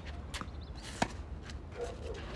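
Tennis racket striking a ball during a rally: one sharp crack about a second in, with a fainter hit before it.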